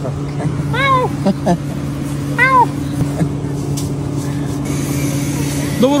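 A cat meowing twice, two short calls that rise and fall in pitch about a second and a half apart, over the steady hum of an idling engine.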